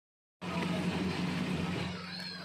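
Steady rushing background noise with a low hum, starting abruptly about half a second in after silence.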